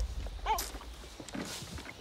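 A giant panda cub gives one short, squeaky bleat about half a second in, with a few faint clicks after it.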